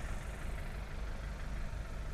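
A small Suzuki truck's engine idling: a low, steady rumble.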